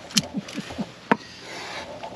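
Side-cutting pliers snipping the tails off nylon zip ties holding wiring to a tractor frame: two sharp clicks about a second apart, with a few short rubbing squeaks between them.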